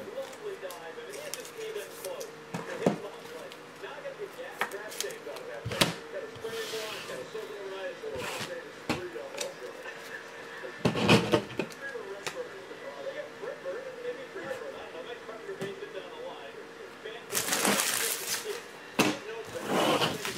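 Trading cards and plastic top-loaders handled on a table, making scattered sharp clicks and taps. Near the end, foil-wrapped card packs rustle for about a second as they are picked up.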